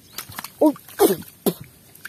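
Wet squelching and slapping in shallow mud as a large tilapia is grabbed by hand and struggles: a few small clicks, then three loud short squelching pops within about a second.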